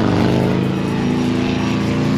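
An engine running close by, a loud, steady, low drone.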